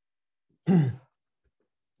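A man's short, breathy sigh-like vocal sound, falling in pitch, once about two-thirds of a second in; otherwise near silence.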